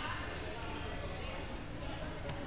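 Basketball game in a gym: a ball bouncing on the hardwood court, with distant voices echoing in the hall.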